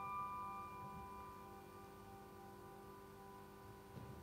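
The last piano chord of a song ringing out and slowly fading away, several sustained notes dying down together.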